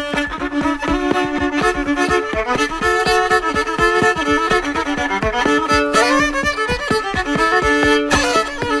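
Instrumental break of an old-time string song with no singing: fiddle playing the melody over a steady picked, percussive rhythm.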